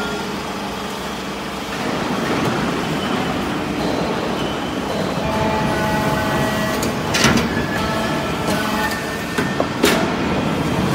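Hydraulic metal-chip briquetting press running, its power unit giving a steady mechanical hum with a few faint steady tones. Two sharp clanks sound, about seven seconds in and just before the end.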